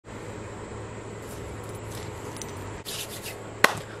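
Steady low hum and hiss of room tone, with a few faint rustles near the end and one sharp click shortly before the end.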